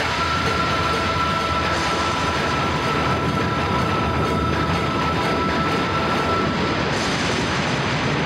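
Dramatic background score and sound effect: a steady, dense rush of noise with a held high tone over it, which stops near the end.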